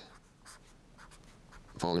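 Felt-tip marker writing on paper: a few short, faint strokes as letters are drawn.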